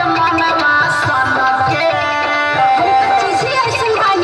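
Loud Indian dance song with a drum beat and a bending melody line, played throughout.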